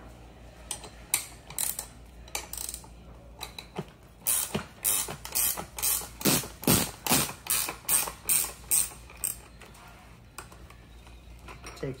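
Half-inch wrench working the nuts off the seat's mounting fitting: a series of sharp clicks, scattered at first, then a steady run of about two a second from about four to nine seconds in.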